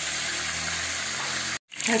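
Chicken legs frying in hot oil and margarine in a pan: a steady sizzling hiss that stops abruptly shortly before the end.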